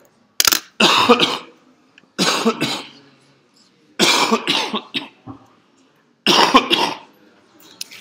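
A person coughing repeatedly, in four loud bouts about every two seconds.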